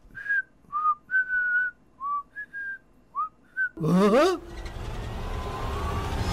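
A person whistling a short tune of about eight brief, clear notes. About four seconds in, a short voiced sound swoops up and down in pitch, followed by a rising wash of noise.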